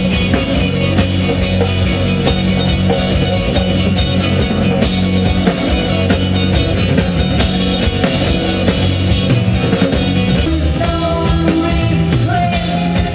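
Live rock band playing loud and dense: drum kit, distorted electric guitar and bass guitar.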